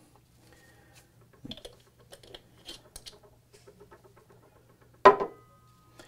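Screw cap being turned down onto a glass TWSBI ink bottle: a run of small clicks and scrapes from the threads, then a sharp clink about five seconds in with a brief ringing tone.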